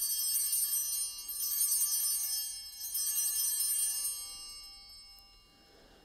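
Altar (sanctus) bells ringing at the elevation of the cup, struck about three times and then left to fade.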